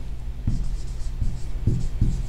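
Marker writing a word on a whiteboard in a few short strokes.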